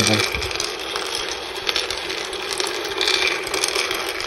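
Raw cocoa beans rattling and clicking steadily as a roaster's rotating stirring paddle pushes them around the pan, rolling like pebbles on a beach. The roaster is in the early part of a gentle, low-temperature roast.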